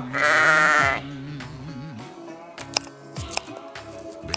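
A sheep bleats once, a wavering call a little under a second long, over background music.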